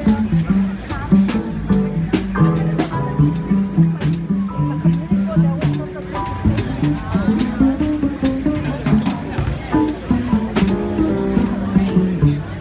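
Live jazz trio playing an instrumental passage: plucked upright double bass, Roland digital stage piano and a drum kit. Bass notes and piano chords run throughout, with frequent short cymbal and drum strikes.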